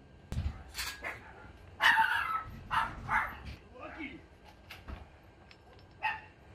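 Dog barking several times, with the loudest bark about two seconds in and a sharp knock near the start.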